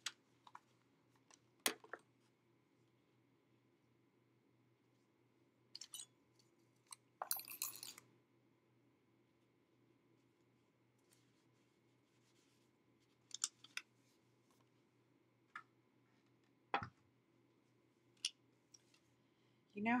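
Sparse light clicks and taps of paper and small craft pieces handled on a tabletop, with a short rustle of paper about seven seconds in; quiet between the sounds.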